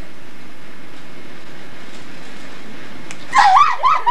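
A steady hiss, then about three seconds in a quick run of loud, high-pitched, wavering yelps.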